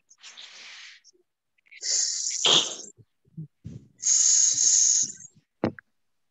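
A person blowing a drawn-out, hissing English 'th' sound with the tongue between the teeth, three times: faint at first, then twice loud, about two seconds apart.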